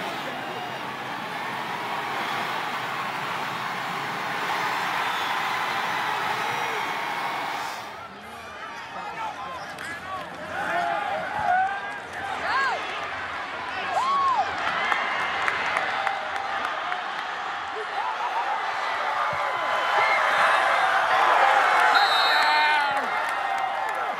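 Football stadium crowd cheering during kickoff returns, with a voice shouting "go, go, go" at the start. The crowd noise breaks off abruptly about eight seconds in, comes back with scattered shouts and whoops, and swells loudest near the end as the returner reaches the end zone.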